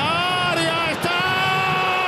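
A Spanish-language football commentator's drawn-out goal shout, one long held note at a steady pitch with a brief break about a second in.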